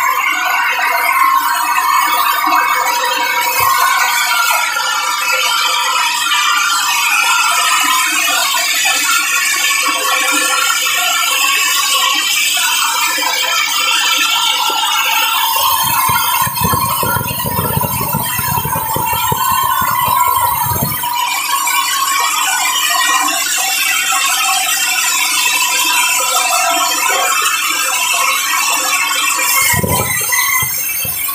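Large sawmill band saw cutting through a squared timber, its blade giving a steady high whine. A low rumble joins in for several seconds in the middle.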